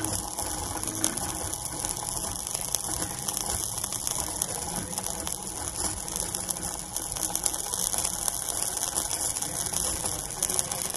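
Red-hot iron ball sizzling on the wet, melting neck of a water-filled plastic bottle: a steady hiss of steam with fast, irregular crackling throughout.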